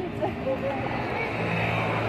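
Background voices of people talking outdoors, with the steady low hum of a vehicle engine coming in about halfway through.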